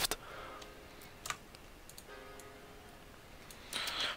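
A few faint, sparse clicks of a computer mouse and keyboard over quiet room tone, bunched between about one and two seconds in.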